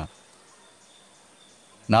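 A man's voice breaks off and picks up again near the end; in the pause between, only faint outdoor background remains, a low hiss with a thin steady high-pitched tone.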